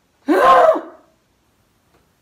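A woman's short shriek of fright, about half a second long, rising and then falling in pitch, as a wandering spider turns up in the room.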